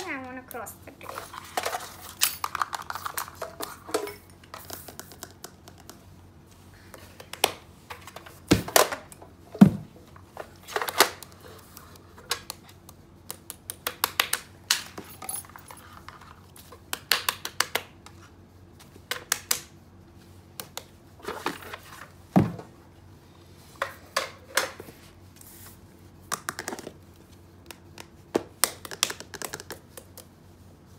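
Toys and small objects being handled and set down on a tabletop: an uneven string of clicks and knocks, with a few louder knocks.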